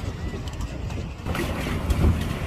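Wind rumbling on the microphone on an open pedal boat, with a louder rush of noise from about two-thirds of the way in.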